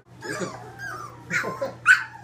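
Three-week-old Labrador retriever puppies whimpering and yipping, with several short high cries, the loudest near the end.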